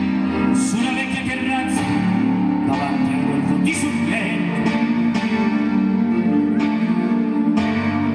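Operatic singing, several voices at once with vibrato, over instrumental accompaniment.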